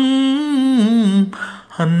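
A male singer's voice in a Tamil film song, holding a long note that wavers and falls in pitch before breaking off a little over a second in. After a brief breath, he starts the next line near the end.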